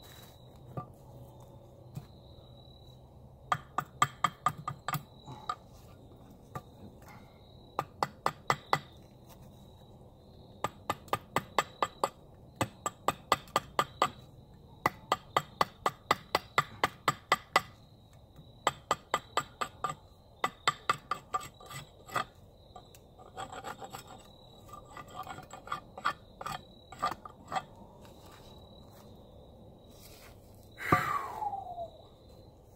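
Hatchet chopping down an Osage orange axe-handle blank in quick runs of light strokes, about four or five a second, with short pauses between runs; the strokes get softer near the end.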